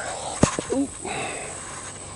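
Steady high-pitched drone of crickets, with a single sharp click about half a second in and soft rustling of a cotton T-shirt being picked up and unfolded.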